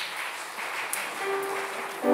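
Congregation applauding, an even, steady clatter of hands, with one faint held instrument note in the second half.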